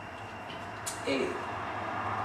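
Steady low room hum, with a click and a short voice sound about a second in.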